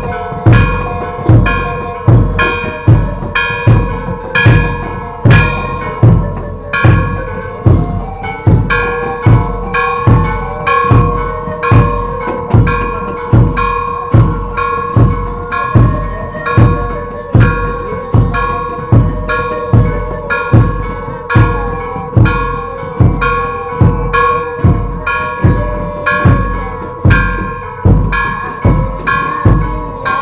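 Procession music: a drum beating steadily, about three strokes every two seconds, under held, ringing tones that run on throughout.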